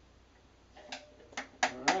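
Four sharp taps and knocks from the second second on, the last two the loudest, some with a brief ring: a plastic cup and funnel knocking against the neck of a glass carboy while sugar is added.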